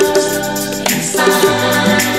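A recorded funk track playing, with several voices singing together over the band.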